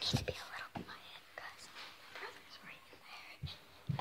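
A girl whispering close to the microphone, in short breathy phrases.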